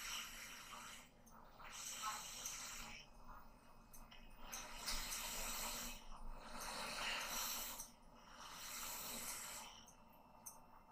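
A person breathing heavily close to the microphone: a run of noisy, hissing breaths, about one every two seconds, with short pauses between.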